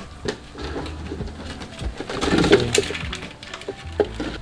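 A dove cooing, with a louder patch of sound about two to three seconds in.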